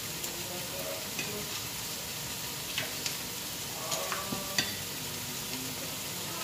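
Chicken pieces, broccoli and long beans frying in oil in a nonstick pot, a steady sizzle with a few short, sharp clicks scattered through it.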